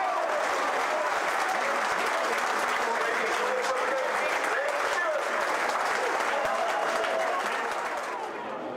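Football crowd cheering and applauding, with voices shouting among the noise; it dies down near the end.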